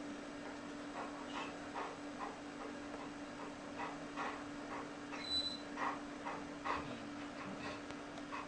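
German shepherd bitch in labour whimpering faintly in short sounds, about two to three a second, the loudest a little after the middle.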